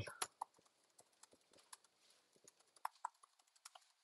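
Faint typing on a computer keyboard: quick, irregular keystroke clicks, a few louder ones around the middle.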